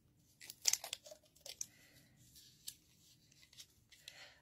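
Handling noise from a squashed clear plastic Christmas ornament turned and fiddled with in the fingers: a cluster of short clicks and crinkles about half a second in, then a few fainter ticks.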